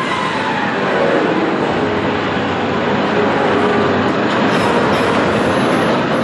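B&M hyper coaster train rolling out of the station along its steel track towards the lift hill: a steady, loud clatter of wheels on rail.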